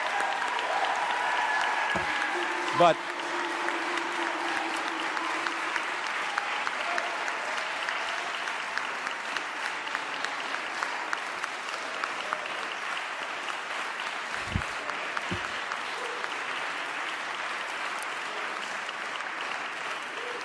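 Audience applauding steadily, a dense patter of many hands clapping, with a few voices calling out in the first seconds.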